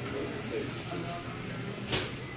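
Background hubbub of a small eatery: faint, indistinct voices over a steady low hum, with a short sharp hiss near the end.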